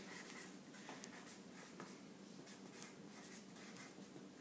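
Felt-tip marker scratching across a sheet of paper lying on a countertop, faint, in short irregular strokes as letters are written.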